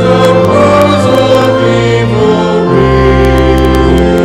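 A congregation singing a hymn together with organ accompaniment, held chords changing every second or so.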